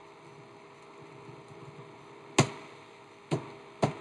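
Computer keyboard being typed on: faint key taps at first, then three sharp, louder key strikes in the second half, the first the loudest.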